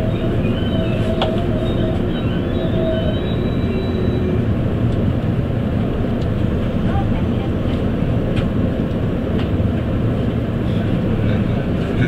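Running noise inside a JR East E257-series limited express train as it comes to a stop: a steady low rumble, with faint high squealing tones in the first few seconds and a few light clicks later on.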